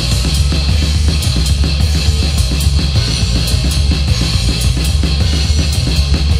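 Hardcore punk recording by a bass-and-drums duo: bass guitar with a steady, driving drum-kit beat of kick, snare and cymbals, in a passage without vocals.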